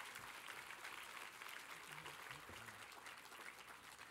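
Audience applauding, fairly faint, dying down a little near the end.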